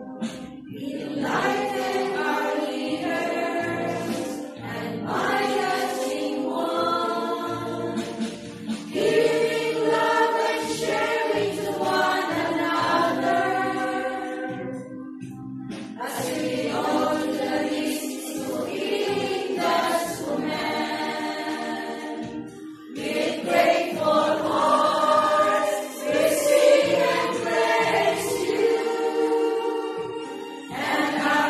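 A choir of women's voices, religious sisters, singing a hymn to the Virgin Mary in long phrases, with short pauses for breath between them.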